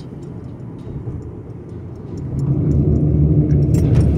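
Car tyres running on a bridge roadway give a steady rumble. A little over two seconds in it grows much louder into a deep droning hum as the tyres roll onto a steel grid (open grate) bridge deck.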